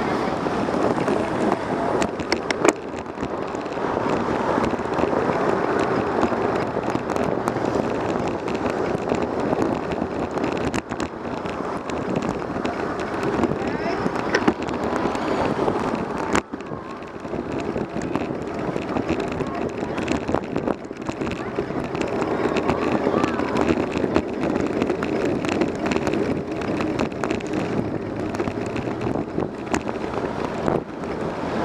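Steady wind and road noise on the microphone of a camera mounted on a moving bicycle, with car traffic around it and a few sharp clicks or knocks.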